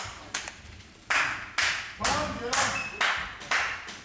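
Scattered hand claps, about two a second, with voices calling out partway through.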